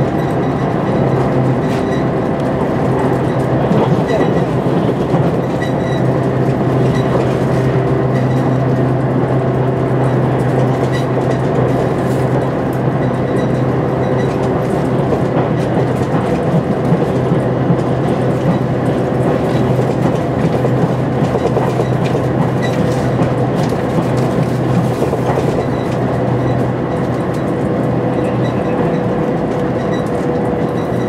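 Steady running noise inside the cabin of a JR Shikoku 2000 series diesel limited-express train: a low, even engine drone and wheels rolling on the rails, with occasional faint clicks of rail joints.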